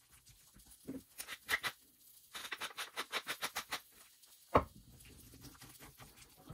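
Thick macaroni and cheese with peas being stirred with a spatula in a stainless steel saucepan: wet squelches and scrapes, coming fast, about five or six a second, for a stretch in the middle, with one sharper tap a little after four and a half seconds.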